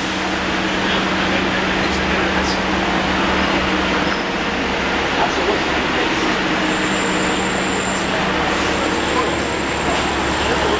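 Double-decker bus engine idling with a steady low hum, over street traffic noise. A faint high whine joins in past the middle.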